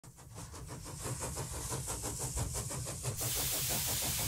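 Steam engine running with a fast even beat, about six or seven strokes a second, fading in and growing louder over a low rumble, then giving way to a steady hiss of steam about three seconds in.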